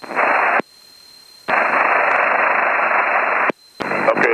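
Aviation VHF radio static heard over the cockpit audio: a short burst of hiss, then a steady hiss of about two seconds, with no voice in it.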